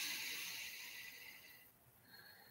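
A person's long breath out close to the microphone, a soft hiss that fades away over about a second and a half.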